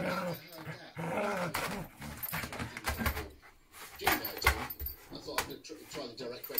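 Dog growling as she plays with a treat, with scattered sharp clicks and scrapes on a plastic floor runner as she moves about.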